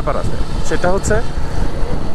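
Steady low rumble of wind and road noise from riding a moving motorcycle, with a man talking over it in the first half.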